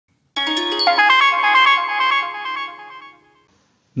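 A short electronic chime jingle: a quick run of bright, ringing notes starts about a third of a second in, holds, and fades out by about three seconds.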